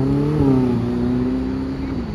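A sports car's engine under acceleration: its note rises over the first half-second, then holds at a steady pitch.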